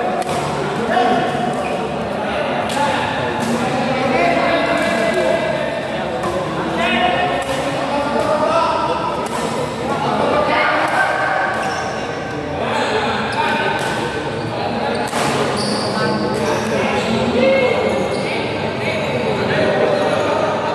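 Badminton play in an echoing hall: sharp, irregular clicks of rackets striking the shuttlecock, over steady chatter and calls from players and spectators.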